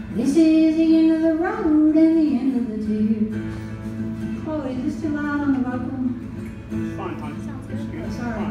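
Woman singing to her own acoustic guitar: a long held note that slides down after about two seconds, then more drawn-out sung phrases over the guitar.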